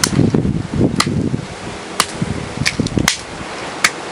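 Close rustling and handling noise against the camera microphone as grass brushes past it, with a series of short sharp clicks about once a second.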